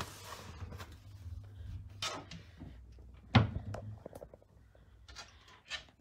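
A cardboard box pushed back onto a cupboard shelf and the cupboard doors shut. There is a knock at the start, a few clicks and knocks after it, and the loudest knock about three and a half seconds in.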